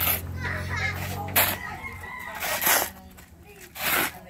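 Steel shovel scraping into a heap of sand and cement mix, four strokes about a second and a bit apart. A rooster crows in the background.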